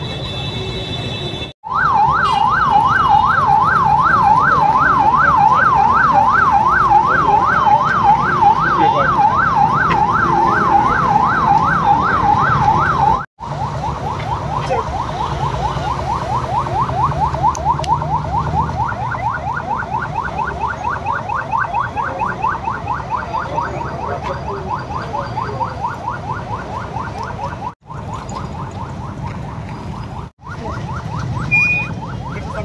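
Police car siren in a fast yelp, its pitch rising and falling about three times a second, loud. After a short break it goes on fainter and with quicker sweeps, over street traffic noise.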